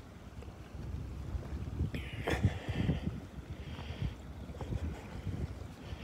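Wind buffeting the microphone in a low, uneven rumble, with a sharp crunch of a footstep on loose rock about two seconds in.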